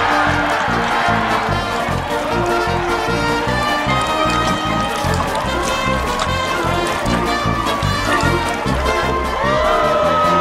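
Soundtrack music with a steady beat running under an eating montage.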